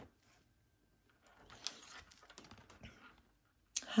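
Oracle cards being handled: faint, irregular clicks and rustling as cards are slid and shifted off the deck in the hand. The sound begins about a second in and fades out shortly before the end.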